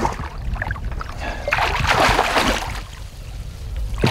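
Water splashing and sloshing in a landing net held in the water at the boat's side as a musky thrashes in the mesh, loudest about halfway through.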